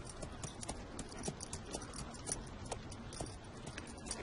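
Horses' hooves clip-clopping on hard ground, a faint, irregular run of clops several times a second.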